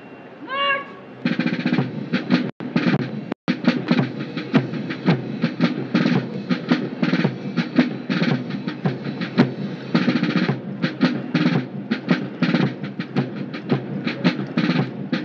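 A brief shouted call, then about a second in a military marching band starts playing a march with a steady drum beat. The sound drops out twice for an instant early on.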